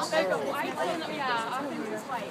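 People talking and chattering, several voices, with no other distinct sound.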